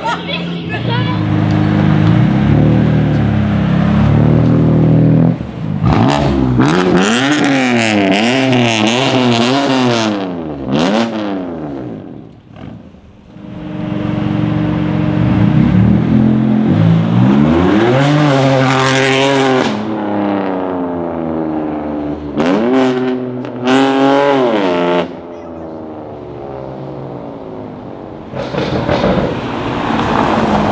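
A string of sports cars and supercars driving past one after another, their engines revved and accelerated hard: quick blips up and down in pitch, then long rising runs of revs. Spectators' voices can be heard with them.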